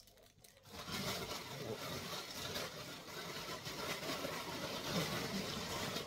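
Steady rustling and handling noise, starting about a second in after a moment of near silence.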